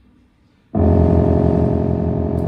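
Synthesizer sounding a loud, sustained chord that starts abruptly about three-quarters of a second in and holds steady.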